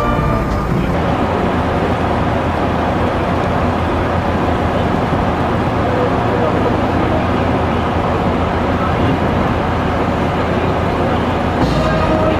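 Steady outdoor ambience of indistinct voices over a dense rumble like traffic, after a brief stretch of music with sustained notes that ends about a second in.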